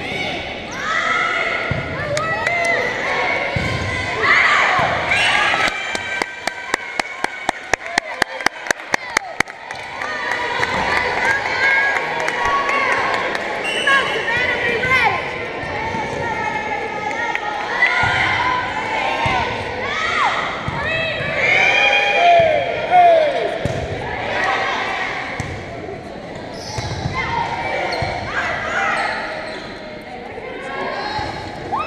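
A volleyball bounced on the hardwood gym floor about a dozen times in quick succession, about four bounces a second, with voices calling out in the hall before and after.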